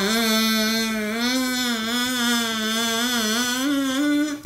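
A homemade drinking-straw oboe, its flattened end cut to a point as a double reed, blown as one long reedy note that wavers slightly in pitch and steps up a little near the end.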